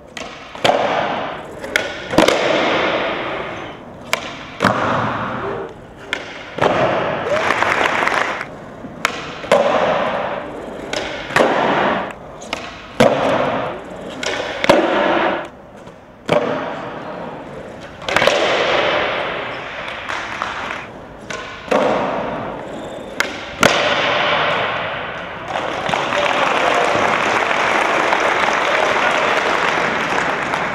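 Skateboards on smooth concrete: tails popping and boards landing with sharp clacks and thuds, over and over through a run of flip tricks, with wheels rolling between the impacts.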